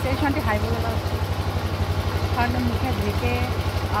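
A small engine idling with a steady, rapid low throb, with voices over it.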